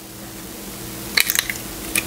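An egg being cracked and broken open by hand over a stainless steel mixing bowl: a short cluster of sharp cracks about a second in, then one more brief click near the end.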